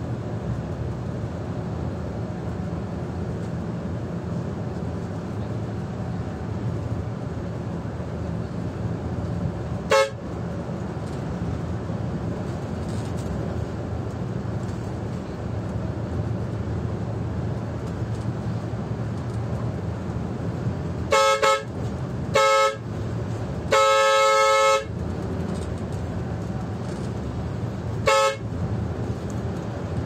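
Coach bus horn sounding five short toots over the steady hum of the bus's engine and tyres heard from the driver's cab: one about ten seconds in, then three close together past the middle, the last held for about a second, and one more near the end.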